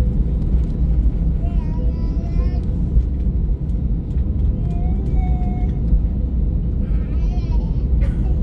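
Steady low rumble inside an Airbus A320neo passenger cabin, from the engines and airframe, with a faint steady hum over it. Faint voices of other passengers come and go over the rumble.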